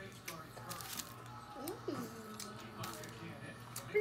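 Faint background music at low level, with soft mouth and chewing noises and a few small clicks from people eating.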